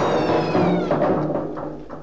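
A loud, animal-like shrieking wail, several pitches sliding slowly downward together and fading out near the end, typical of a movie monster's screech, with film score music under it.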